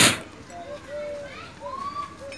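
A single sharp click or knock at the very start, then faint children's voices calling in the background in short, pitched cries.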